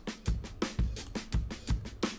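A drum kit loop (kick, snare and hi-hats) in a steady groove, running through a dynamic saturation plugin in inverse mode, so the quieter hits between the kicks and snares are driven up and the kit pumps.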